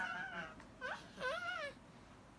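Three short, high-pitched whimpering calls with a wavering pitch, the last one rising and falling.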